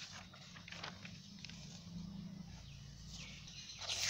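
Sheets of paper being handled and turned over, rustling in short bursts with a louder rustle near the end, over a low steady hum.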